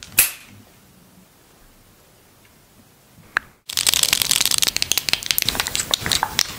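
A sharp click just after the start and another about three seconds later, then from past the middle dense, rapid close-up clicking and tapping: long acrylic nails tapping and scratching on a plastic lip-gloss tube.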